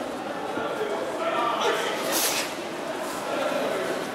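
People's voices calling out in a large hall, with a short, sharp rush of noise about two seconds in.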